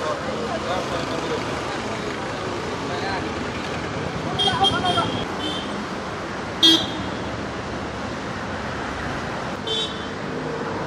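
Street traffic noise with several short vehicle horn toots: a couple about halfway through, a brief loudest one soon after, and one more near the end. Voices are mixed in with the traffic.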